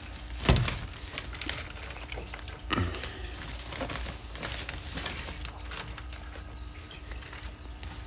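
Loose soil being tossed by hand onto a terrarium background: faint scattered rustling and pattering, with two dull thumps about half a second and nearly three seconds in, over a faint steady hum.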